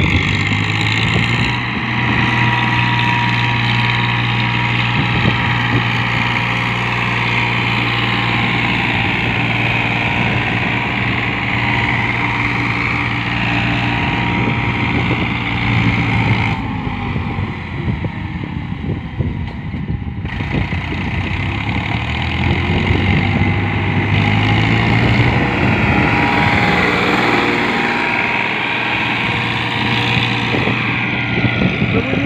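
Diesel tractor engine, a Farmtrac Champion, running steadily under load as it pulls a tillage implement across the field. The engine note sags briefly and picks up again about two-thirds of the way through.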